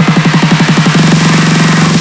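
Dubstep build-up: a pitched low electronic hit repeats faster and faster until it blurs into one sustained tone about halfway through, under a steady bright noise wash. It cuts off at the end, just before the drop.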